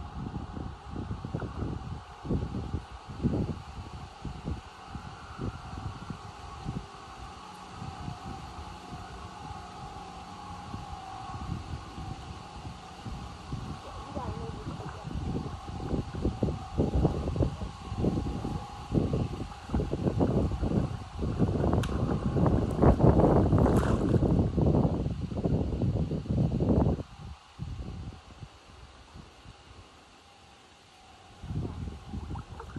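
Wind buffeting the microphone in irregular low gusts, heaviest from a little past the middle until near the end, when it suddenly drops away.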